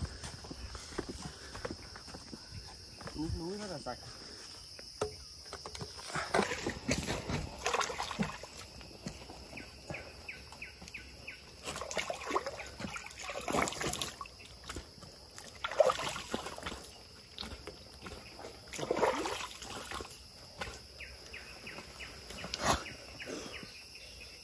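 Water splashing and sloshing in irregular bursts as hands scoop and wash in a hillside water tank, over a steady high chirring of insects.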